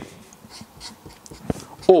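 Faint scratching of a felt-tip marker on paper, with a single sharp click about one and a half seconds in.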